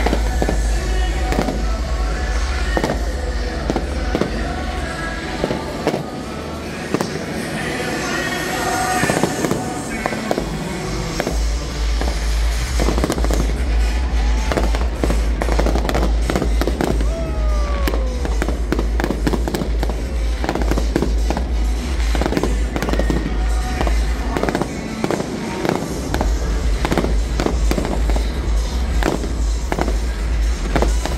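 Aerial fireworks shells bursting in a rapid, continuous run of bangs and crackles. A deep rumble sits underneath and drops away briefly twice.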